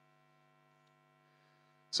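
Faint, steady electrical mains hum, a buzz of several even tones held without change. A man's voice starts at the very end.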